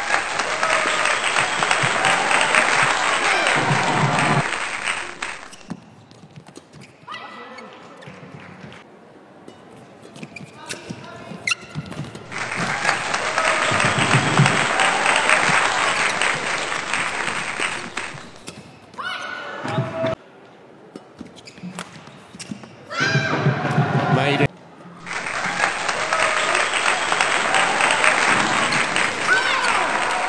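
Badminton rally in an indoor arena: sharp racket strikes on the shuttlecock, and three stretches of several seconds of loud crowd noise that start and stop abruptly.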